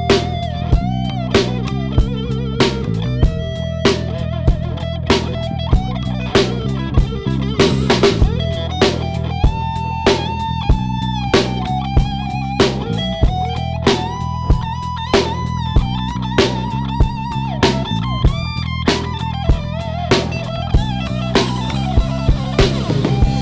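Instrumental passage of a rock or blues song: an electric guitar plays a lead melody with bent and wavering notes over bass and a steady drum beat of about two hits a second.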